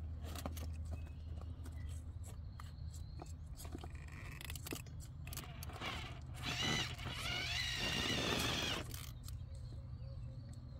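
RC rock crawler's drivetrain whining under throttle for about three seconds, starting about six seconds in, while its tyres and chassis click and knock against the rock.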